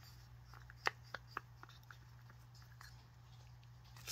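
A few faint light taps and clicks, clustered about half a second to a second and a half in, of a wooden craft stick against a small plastic cup of pigmented resin, over a steady low hum.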